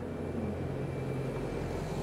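Street traffic: a motor vehicle's engine running with a steady low hum.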